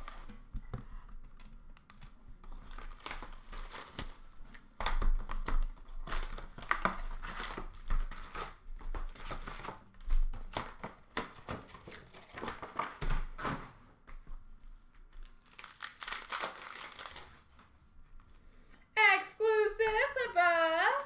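Hockey card pack wrappers being torn open and crinkled by hand, in irregular bursts of rustling with quieter gaps between.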